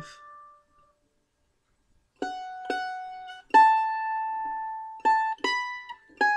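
Breedlove mandolin picked one note at a time in a short melody phrase. Five notes start about two seconds in, and the third rings out longest.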